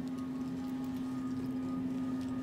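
A steady low hum of a background music drone, with faint light rubbing and scratching of hands and nails over a towel on a bare back.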